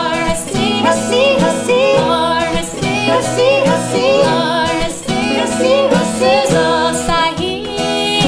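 Three women's voices singing a Naga folk song in close harmony over a steadily strummed acoustic guitar.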